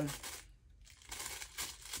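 Plastic packaging crinkling and rustling as it is handled, in short irregular bursts through the second half.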